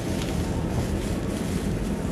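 Steady low rumbling noise on the camera microphone, like wind or handling noise, with no clear distinct sound standing out.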